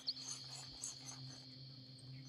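Quiet, steady high-pitched insect chirring, with a faint low hum beneath it and a couple of soft clicks.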